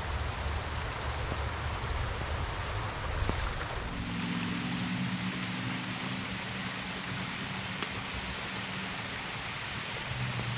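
Shallow creek water running steadily over rocks, a continuous rushing. About four seconds in, a low rumble drops away and a faint low hum comes in.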